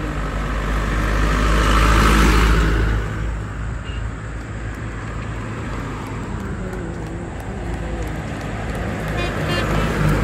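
A light truck passes close by. Its engine and tyre noise swells to a peak about two seconds in and then fades into steady road traffic. Near the end a fast clattering comes in as the horse carts draw close.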